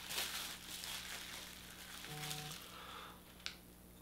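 Plastic bubble wrap crinkling and rustling as a small action figure is unwrapped, dying away after about two and a half seconds, with a single click near the end.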